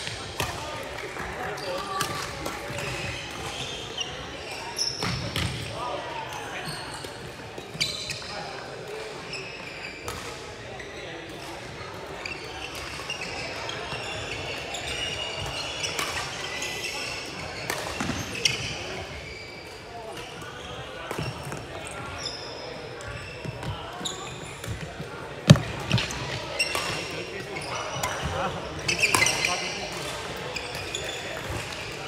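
Badminton play in a large, echoing sports hall: irregular sharp racket strikes on the shuttlecock and footfalls, the loudest strike about three-quarters of the way through, with short sneaker squeaks on the court floor and a murmur of distant voices.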